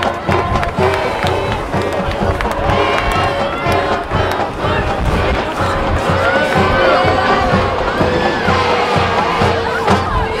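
High school marching band playing a pep tune, its drumline keeping a steady beat under long held notes, with a stadium crowd cheering and shouting over it.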